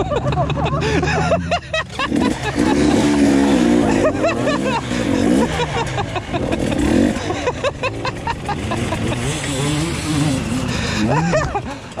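Enduro dirt bike engines revving up and down as riders take the jumps and ramp close by, the pitch rising and falling with the throttle. Laughter near the end.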